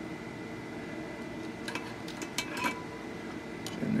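A few light clicks and ticks of thin wire leads and a small resistor being handled and twisted together by hand, mostly in the middle, over a steady room hum with a faint high whine.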